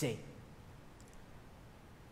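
A man's voice trails off in a short falling sound right at the start. Then comes a pause of quiet room tone, with a couple of faint clicks about a second in.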